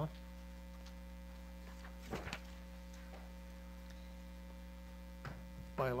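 Steady electrical mains hum in the meeting room's microphone system, with one short sound about two seconds in.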